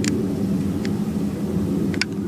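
A steady low mechanical hum, with a few faint short clicks.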